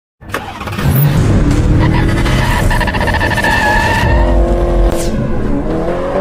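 A car engine revving, with tyre squeal, as an intro sound effect. It starts just after the opening, with pitch rising and falling as it revs and a held high squeal through the middle.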